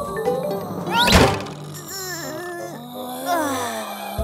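Cartoon rake-slap sound effect: a quick rising swish and a loud thunk about a second in, as a stepped-on garden rake's handle springs up and smacks into a face, over light background music.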